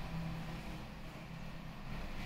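Faint steady low hum over background noise, with no distinct events.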